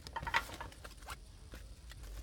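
Trading cards being handled: faint scratchy rustling with a few small clicks in the first second, then quieter.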